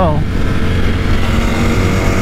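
Sportbike engine running steadily at highway cruising speed in third gear, with wind rushing past the microphone.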